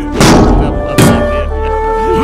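Dramatic film music with steady held tones, cut by two heavy thuds, one just after the start and one about a second in, as of blows being struck.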